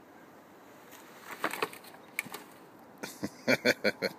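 A Tonka truck with a child aboard slides down a sand pile and tips over, with a scraping, rustling clatter about a second in. A quick run of laughter, the loudest sound, follows near the end.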